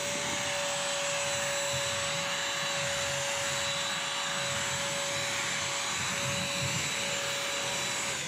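Bissell CrossWave wet/dry floor cleaner running with a steady whine, its suction motor and spinning brush roll scrubbing up a raw egg spilled on a hard floor.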